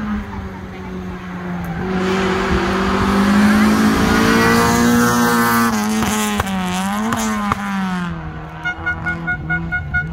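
Rally car engine at hard throttle, getting louder and higher in pitch as it approaches. The pitch then dips sharply and recovers several times as the car passes and fades away. A quick run of short pulses comes near the end.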